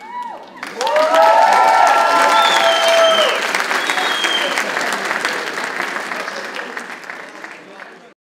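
An audience applauding and cheering as a dance number ends. Clapping breaks out about a second in with shouts and whoops over it for the first few seconds, then fades gradually until it cuts off at the end.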